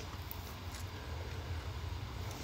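Faint, steady low rumble of background noise, with no distinct events.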